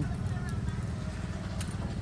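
Low, fluttering rumble of outdoor background noise, with no clear event standing out.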